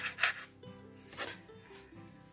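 Kitchen knife cutting through tomato onto a wooden cutting board: a few short strokes in the first half-second and one more after about a second, over quiet background music.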